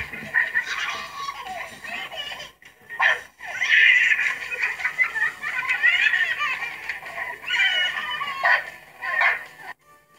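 Background music with high-pitched giggling and laughter over it, in bursts that break off briefly a few times and stop suddenly near the end.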